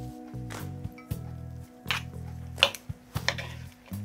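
Wooden serving spoons tossing a dressed, finely shredded napa cabbage salad in a bamboo bowl: irregular soft wet squishes and light clicks, about half a dozen, over background music with low held notes.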